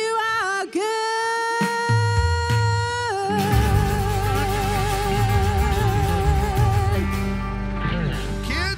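Live worship band: a woman singing two long held notes, the second with vibrato, over electric guitar and drums. The singing stops about seven seconds in.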